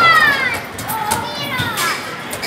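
A young child's voice giving two high-pitched, falling squeals, one at the start and one near the end, over the general noise of a busy arcade.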